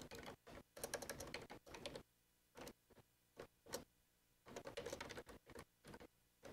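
Faint typing on a computer keyboard: a quick run of keystrokes, a few lone taps, then another run as a line of code is entered.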